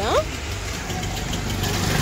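Motor vehicle engine running: a steady low rumble with a fast, even pulse, growing slightly louder.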